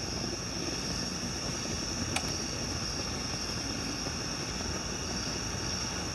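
Gas fire pit burning with a steady rushing hiss, with a constant high-pitched whine over it and one faint click about two seconds in.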